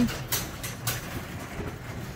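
Chamberlain LiftMaster garage door opener running, drawing the sectional garage door down on its tracks: a steady rolling, rattling noise with a low hum and a few clacks in the first second.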